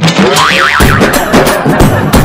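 Cartoon-style boing sound effect with a wobbling pitch, then a music cue with a steady drum beat starting about a second in.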